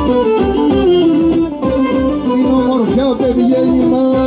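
Cretan folk music played instrumentally: a bowed Cretan lyra carries a wavering melody over strummed laouta and a steady drum beat.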